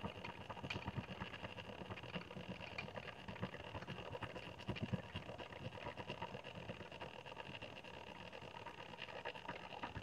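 Electric stand mixer running steadily on low speed, beating the fudge icing as the warm butter and water are mixed into the powdered sugar and cocoa.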